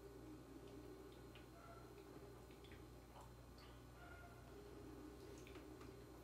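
Near silence: room tone with a steady low hum and a few faint scattered clicks.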